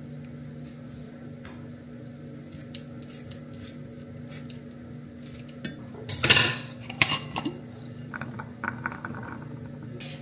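KitchenAid food scissors snipping with light clicks over a steady low hum, then a louder clatter of dishes against a stainless steel pan about six seconds in, followed by a few smaller knocks.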